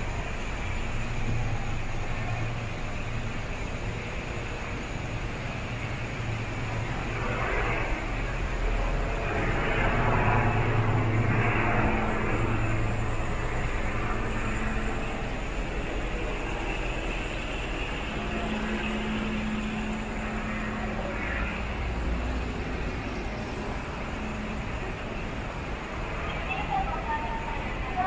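City street ambience: a steady low rumble of road traffic, swelling a little about ten seconds in.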